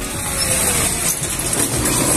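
Steady outdoor street-traffic noise: a motor vehicle running close by.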